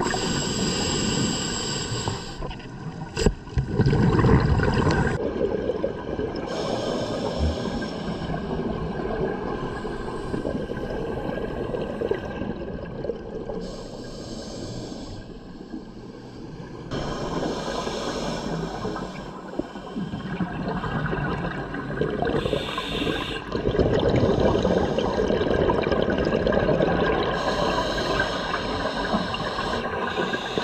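Scuba regulator breathing heard underwater: a hissing inhale every four to five seconds, each followed by the low rumbling gurgle of exhaled bubbles. A single sharp click about three seconds in.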